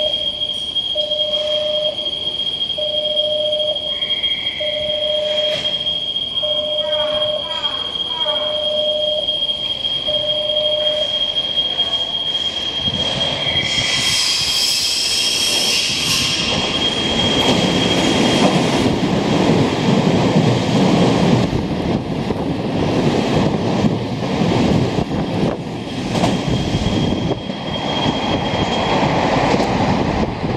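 Nankai 8000-series airport express train passing through a station without stopping. It is heard first as a shrill sound while it nears, about 14 seconds in, then as a loud rumble of wheels on rail as it runs past through the second half. A steady high tone and a beep repeating about once a second sound over the first eleven seconds.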